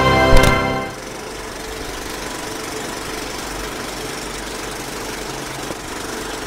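A music cue ends with a sharp hit about a third of a second in, then dies away. From about a second in, a steady mechanical running sound, like a small motor, carries on at an even level.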